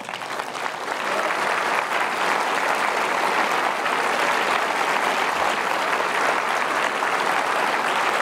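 A theatre audience applauding, a dense steady clapping that swells over the first second and holds.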